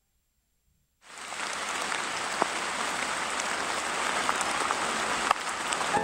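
Steady rain falling, coming in about a second in after a moment of silence, with a few single drops ticking out clearly over the hiss.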